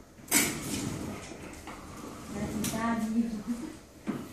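A sudden noise about a third of a second in, the loudest moment, fading away, then indistinct voices of people in the room.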